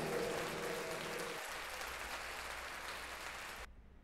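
Crowd applause, slowly fading and then cutting off abruptly shortly before the end.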